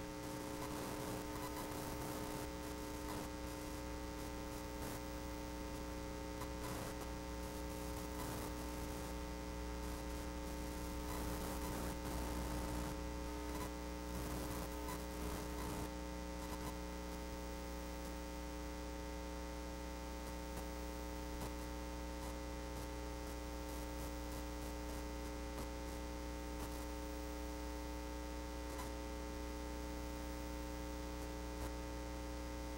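Steady electrical hum, several fixed tones held without change, over faint background noise.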